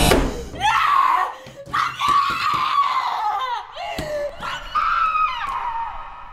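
A woman screaming: a series of long, high-pitched cries, each about a second, some breaking and falling in pitch, dying away near the end.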